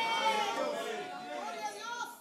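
Faint overlapping voices of several people murmuring, quieter than the preaching around them.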